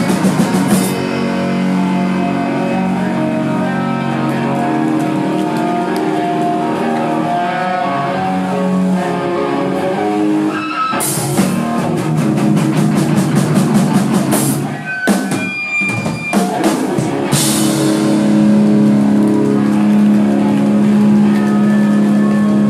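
Melodic hardcore band playing live, with distorted electric guitars, bass and drum kit. Partway through, the drums pound out a run of fast hits, the sound drops away for a moment, and then the band holds one long ringing chord to the end.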